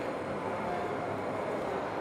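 Steady, even mechanical hum of a dairy processing plant room.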